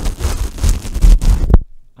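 Handling noise from a furry windscreen being pulled off a Rode NTG5 shotgun microphone right at the capsule: loud fur rustling and rubbing with low rumbling thumps. It stops suddenly about one and a half seconds in.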